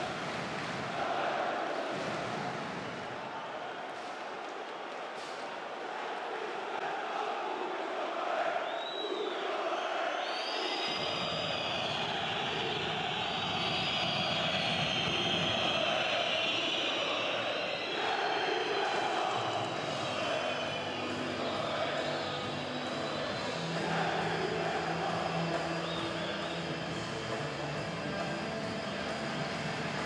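Packed basketball arena crowd, loud and continuous, with shrill whistles cutting through a few times and sustained chanting later on.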